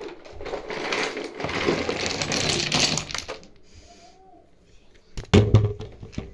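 Small plastic toys rattling and clattering together for about three seconds, then a single loud thump a little after five seconds.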